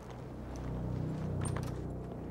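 A steady low mechanical hum, like an engine running, with a few light clicks about a second and a half in.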